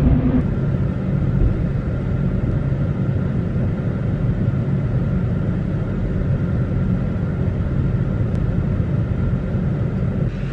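Steady low rumble of a diesel pickup truck heard from inside the cab, engine and road noise.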